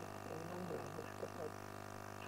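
Steady electrical mains hum on the sound system, with a few faint, brief voice sounds in the first half.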